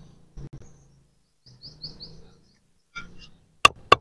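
Brick tile being tapped down into its bed of wet mud with a wooden tool handle: a quick run of sharp knocks near the end, seating the tile level with its neighbours. A few faint bird chirps are heard a little before the middle.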